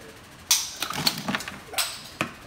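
A wooden wall-telephone cabinet, a reproduction, being handled and turned over. There is a sharp knock about half a second in, then a run of short clicks and rattles, and another sharp knock near the end.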